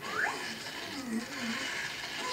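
Cartoon soundtrack playing from a television: a quick rising glide near the start, then a wavering, sing-song pitched sound.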